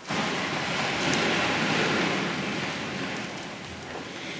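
A church congregation rising to its feet from the pews: a sudden, dense rustle and shuffle of many people standing at once, which slowly dies down.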